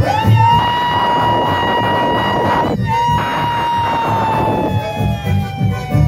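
A sapucai, the shrill cry of chamamé: a man's long, high-pitched yell held steady for almost three seconds, broken for a moment, then held again and sliding slowly down in pitch. It rises over the band's accordions and rhythm, which keep playing underneath.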